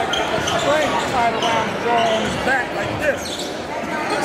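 Live basketball game in a gym: a ball being dribbled and sneakers squeaking in short chirps on the court, over steady crowd chatter.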